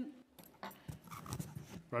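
Faint, indistinct background voices with a few small clicks and knocks, between roll-call answers.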